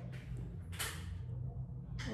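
Metal spoon scraping into a plastic cup of cream dessert, one short scrape about a second in, over a steady low hum.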